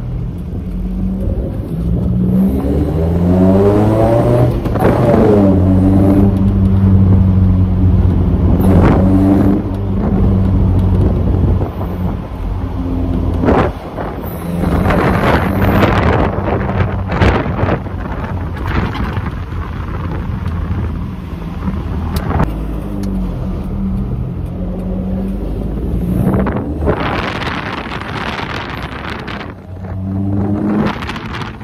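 Datsun 720's Z18 four-cylinder engine heard from inside the cab during a test drive on a freshly fitted MSD 6A ignition box. The engine note rises as the truck pulls away, then dips and climbs again several times through the gear changes.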